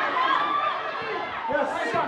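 Football spectators shouting and chattering, many voices overlapping at once.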